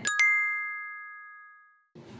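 A single bell-like ding, struck once and ringing away over about a second and a half, with all other sound cut out: an edited-in chime sound effect.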